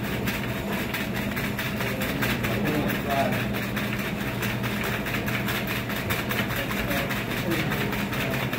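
Hand-cranked cocktail shaker machine: a large flywheel turned by hand drives metal shaker tins back and forth in a steady, rapid mechanical clatter, with a steady hum and faint voices underneath.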